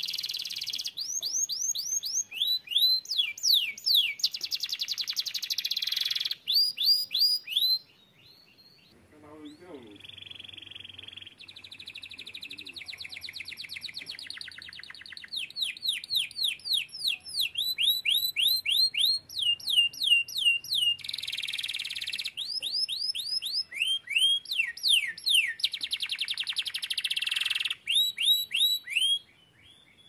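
Domestic canary singing: fast repeated runs of falling whistled notes and quick trills. It breaks off briefly about eight seconds in and stops shortly before the end.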